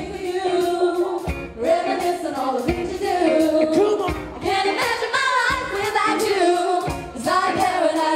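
Live pop-style song: several young women singing together into microphones, backed by a band with saxophones, guitar and double bass, with a low beat landing about every second and a half.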